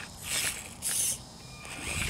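A 1/24-scale Axial SCX24 RC crawler climbing a rock step: two short bursts of its small electric motor and gears whirring with the tyres scrabbling on the rock.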